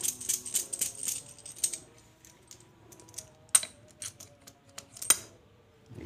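Light metallic clicks and clinks of a tapered roller bearing being fitted by hand onto a splined differential pinion shaft in its steel housing, the rollers rattling in their cage. The clicking is dense for the first two seconds, then sparser, with two sharper clicks about three and a half and five seconds in.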